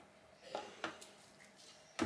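Near silence: quiet room tone with two faint short taps a little after half a second in.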